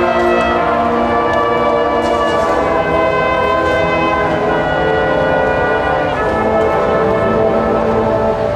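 Marching band's brass section playing loud, sustained chords that shift to new pitches a few times.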